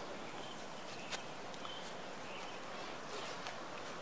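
Quiet outdoor backyard ambience: a steady hiss with a few faint, short bird chirps and a couple of small clicks.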